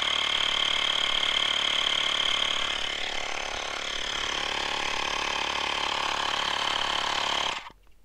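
Portable electric tyre inflator running steadily with a high whine while pumping up a punctured, patched front motorcycle inner tube, then switching itself off suddenly near the end.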